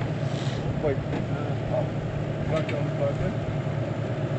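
A vehicle engine idling steadily, a low even hum. A voice briefly says "wait" about a second in.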